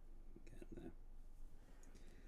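Two quiet, half-whispered words ("get there") spoken about half a second in, over faint room tone.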